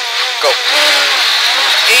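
Ford Escort Mk2 rally car engine, heard from inside the cabin, held at wavering revs on the start line and then pulling away hard, getting louder about half a second in as the car launches on "go".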